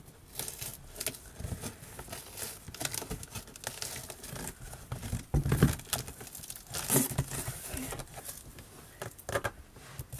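Scissors cutting and scraping along packing tape on a cardboard box, with cardboard flaps and packing being handled and crinkling. There is a louder bump about halfway through and another a little later.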